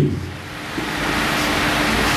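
Steady rushing room noise, fans and air conditioning, that grows louder after the first half second, with a faint steady low hum underneath.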